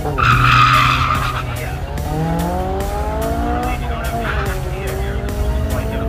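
Car launching off a drag-strip start line: a burst of tire squeal for about the first second, then the engine's revs climbing through the gears, dropping twice at the upshifts as it pulls away.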